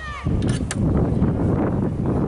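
Wind rumbling on the camera microphone, coming in about a quarter-second in and running on loudly, with a brief shout at the very start and two sharp clicks about half a second in.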